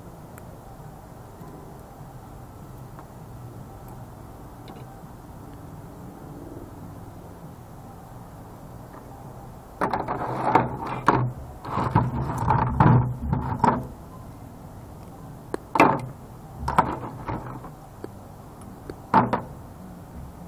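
Parts of a stripped CRT monitor being handled and moved about on a worktable: a few seconds of clattering and scraping starting about halfway through, then three short knocks.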